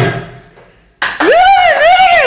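Bandari dance music fading out, then after a short gap a loud, high-pitched vocal whoop from a man that rises steeply, wavers twice and falls away.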